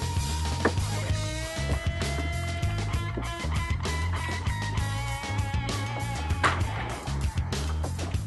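Background music with a steady low beat and held notes.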